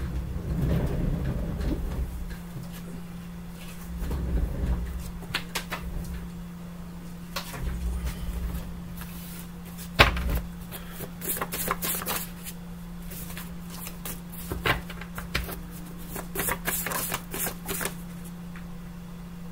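Tarot cards being handled and shuffled on a table: scattered clicks and short rattling runs of cards, with one sharp knock about ten seconds in, over a steady low hum.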